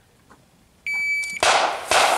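Electronic shot timer's start beep, a single high tone about half a second long, followed about half a second later by the first pistol shot and a second shot near the end, each with a short echo.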